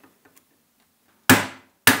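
Two sharp hammer blows about half a second apart, each dying away quickly, on the metal drive rod of a Pearl Eliminator double bass drum pedal, tapping the rod out of its bearing.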